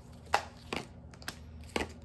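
Tarot cards being handled and drawn from the deck: about four short, light snaps and taps over two seconds.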